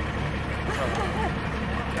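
A steady low engine rumble, like an idling vehicle, under people talking.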